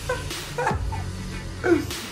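A young man laughing hard in a few short, high bursts over steady background music.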